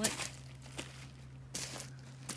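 Footsteps crunching on wood-chip mulch, a few scattered steps.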